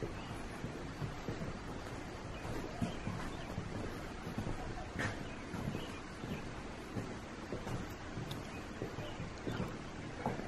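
Soft, irregular footsteps walking across the floor of a wooden covered bridge, over a steady background hiss, with one sharper click about halfway through.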